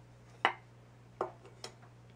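Wooden spoon knocking against a stainless steel mixing bowl as it is put down: three short, sharp knocks in quick succession, the first the loudest.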